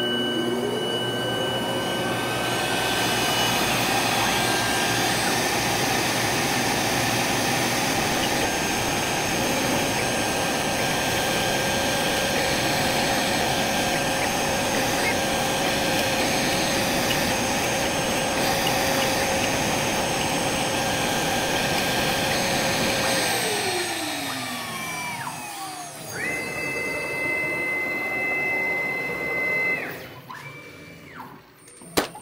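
CNC router spindle and its dust extraction running while the router cuts acrylic, a steady whine over loud suction noise. The spindle whine rises as it spins up about a second in and falls away as it spins down near the end, after which a different, higher steady whine carries on for the last few seconds.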